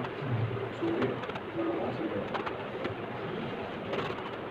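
Low, short cooing calls of a bird, a few times, over a faint murmur of voices in the room.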